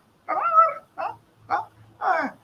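An animal's high-pitched cry of about half a second, followed by two short calls about half a second apart.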